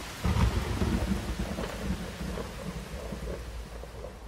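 Heavy rain falling with a low rumble of thunder that breaks about a quarter second in and slowly dies away. It is the rain-and-thunder soundtrack of a music video's cinematic outro scene.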